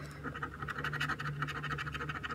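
A coin rubbing quickly back and forth over the latex scratch-off coating of a lottery scratcher ticket, in rapid, even strokes starting about a quarter second in.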